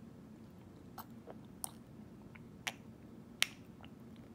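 A baby sipping water from a small plastic cup: about four faint mouth clicks and smacks, spread over a few seconds, the last the sharpest.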